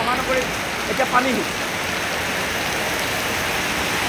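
Heavy rain pouring steadily, an even hiss of water, with a voice heard briefly in the first second and a half.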